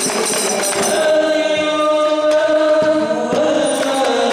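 Rebana ensemble: male voices singing over hand-struck frame drums. About a second in the drum strokes drop back and a single long note is sung and held for about two seconds before the music fills out again.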